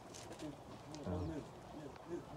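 Faint voices at a distance, with a low cooing bird call.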